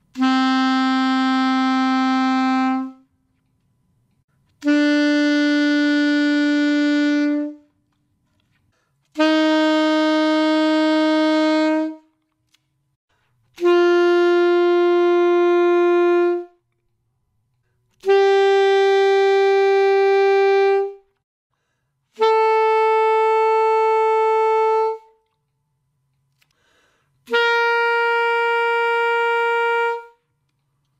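Alto saxophone playing a rising scale of seven long held notes, each about three seconds with short silences between, from written A up to the G an octave above the starting G of the warm-up scale.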